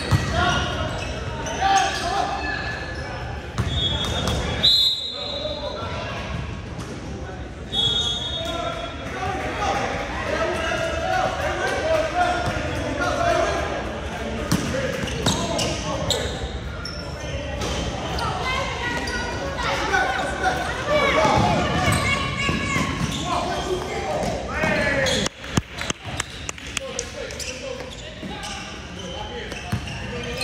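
Basketball dribbling and bouncing on a hardwood gym floor amid indistinct, echoing voices of players and spectators in a large hall. Two short high-pitched tones sound about four and eight seconds in.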